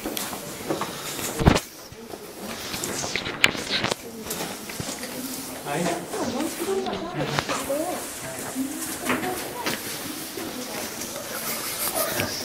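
Indistinct chatter of a group of people talking, with a sharp knock about one and a half seconds in and a smaller click a couple of seconds later.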